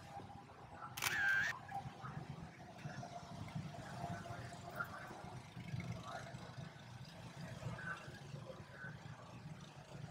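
A camera shutter firing once, about a second in, over a quiet background with faint voices.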